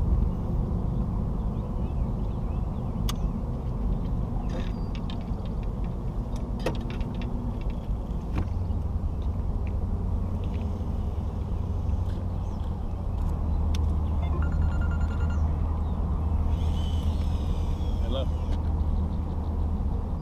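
Boat outboard motor idling with a steady low rumble; its tone gets stronger about eight and a half seconds in. A few light clicks of fishing tackle sound over it.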